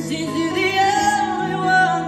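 A female singer's live ballad vocal over instrumental accompaniment, holding long notes that waver in pitch through the second half.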